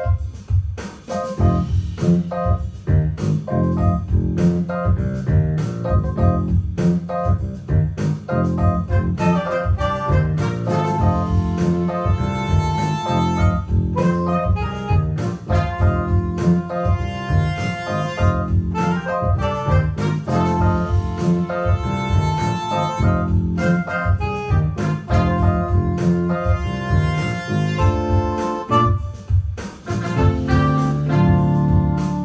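An ensemble of electronic keyboards playing a jazz tune: sustained organ-sound chords over piano and low bass notes, with regular sharp note attacks and no break.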